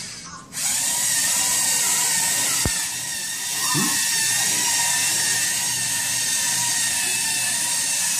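LEGO Mindstorms robots' electric motors and gear trains whirring steadily with a high whine as the robots drive, with one sharp click partway through.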